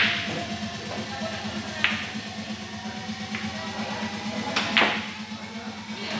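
Sharp clicks of pool balls and cue during a shot: a loud click at the start, another about two seconds in, and a pair of clicks near the end, over steady background music.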